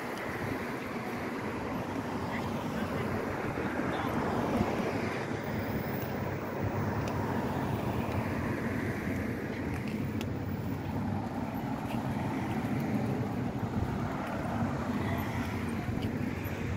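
Steady city street noise: road traffic running with people talking in the background.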